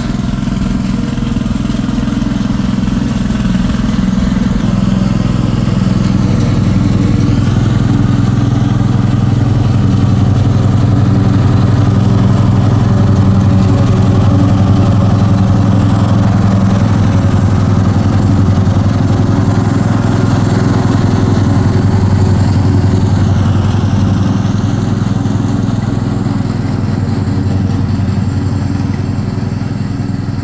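Lawn mower engine running steadily at working speed. It grows a little louder toward the middle and eases slightly near the end.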